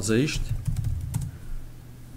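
Typing on a computer keyboard: a run of separate key clicks as a word is typed.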